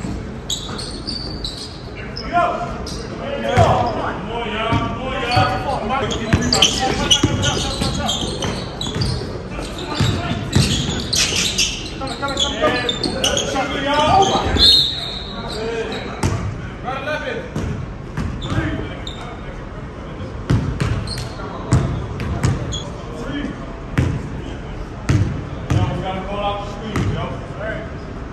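Basketball bouncing on a gym's hardwood court with repeated sharp knocks, amid indistinct players' shouts, all echoing in the large hall.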